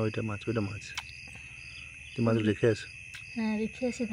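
Night insects singing: a steady high trill with a short chirp repeating about three times a second, carrying on under a few short bursts of a voice.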